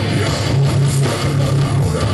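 Hardcore punk band playing live and loud: distorted electric guitars and bass grind out a heavy riff in repeated low notes, over fast drums.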